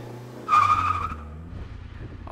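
Motorcycle engine running low, with a brief high-pitched squeal about half a second in that fades within about a second: the brakes squealing as the bike slows.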